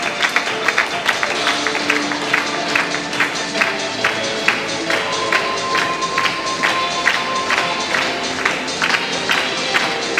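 Music with a fast, steady beat.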